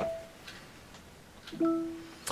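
Amazon Fire TV voice-search chimes from the TV: a short pitched tone fading away just after the start as the search stops listening, then another tone about a second and a half in as the recognised result comes up.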